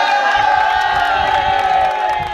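A group of people cheering together in one long, held shout, several voices overlapping.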